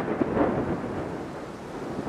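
A rushing, rumbling noise that slowly fades.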